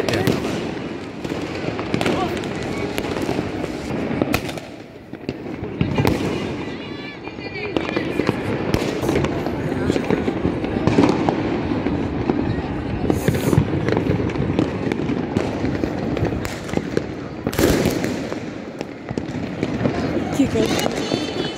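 Fireworks and firecrackers going off across the city in a dense, irregular run of bangs and crackles, with several sharper loud bangs among them.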